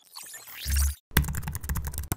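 Produced outro sound effects: a swooshing sweep that lands on a deep bass hit, then a fast run of typing-like clicks over a low rumble.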